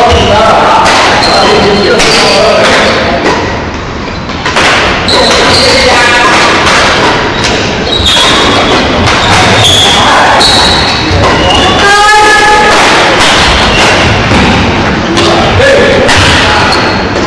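Badminton play on an indoor court: repeated sharp racket hits on the shuttlecock and thuds of footwork on the floor, with short high squeaks and players' voices mixed in, loud throughout.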